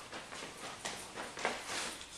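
Several soft footsteps walking across a floor.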